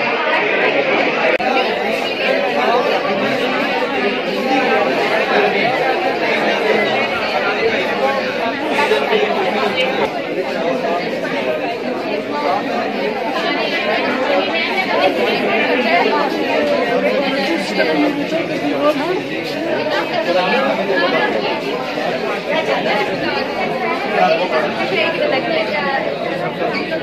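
Chatter of many people talking at once in a crowded, large indoor hall, with no single voice standing out and no sudden sounds.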